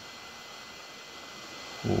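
Hot-air gun blowing with a steady hiss, heating a plastic earbud shell to soften the glue along its seam.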